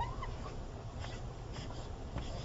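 Quiet room tone with a low steady rumble, and one brief high squeak right at the start.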